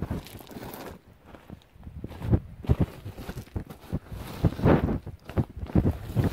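Boots shuffling and scraping through loose crushed-stone gravel, stones crunching and rattling in irregular strokes as the gravel is spread and levelled by foot. The crunching is light at first and grows louder and busier about two seconds in.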